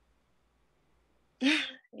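A person sighs once, a short breathy exhale about one and a half seconds in, after a near-silent pause.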